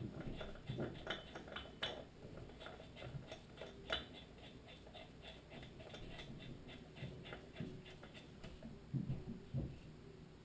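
Faint metallic clicks and ticks as a small-engine flywheel is worked by hand onto the crankshaft and its key, with a quick, even run of small ticks through the middle and a few soft bumps near the end.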